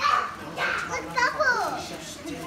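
Young children's high voices calling out and chattering excitedly over one another, one voice sliding down in pitch in the second half.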